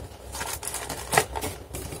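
A handful of light taps and rustles of cardboard packaging being handled, as a hand lifts the white card insert out of the router's box.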